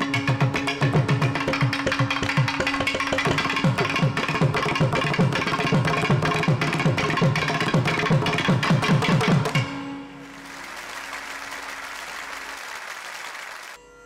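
Mridangam and thavil playing a fast passage of rapid strokes over a steady sruti drone, which stops abruptly about ten seconds in. Applause follows for the last few seconds.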